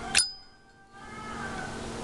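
Brushed-chrome Zippo lighter's lid flicked open: one sharp metallic click, followed by a clear ringing ping that fades over about a second and a half.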